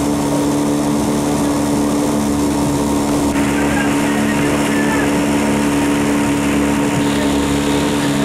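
Coaching launch's outboard motor running steadily at a constant speed as it keeps pace with a rowing eight, a loud even hum heard from aboard the boat.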